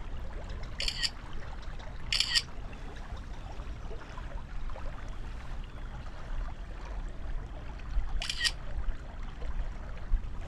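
Smartphone camera shutter sound, three times: about a second in, again a second later, and near the end. Under it, the stream trickles steadily.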